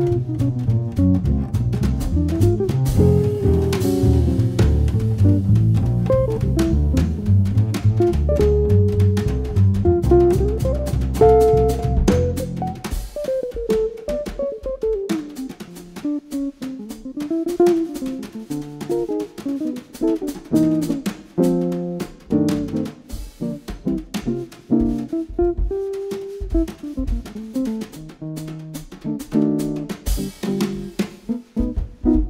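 Small jazz trio of hollow-body archtop electric guitar, double bass and drum kit played with brushes, swinging at medium tempo. The bass walks under the guitar for about the first dozen seconds, then drops out, leaving single-note guitar lines and chords over the brushed drums.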